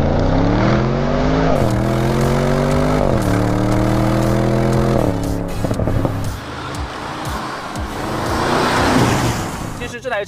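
Audi RS6 Avant Performance's twin-turbo 4.0-litre V8 accelerating hard, its pitch climbing and dropping at two upshifts, about a second and a half and three seconds in. After about five seconds the engine note fades and tyre and road rush takes over, swelling near the end.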